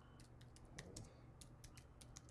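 Faint typing on a computer keyboard: an irregular run of quick keystrokes.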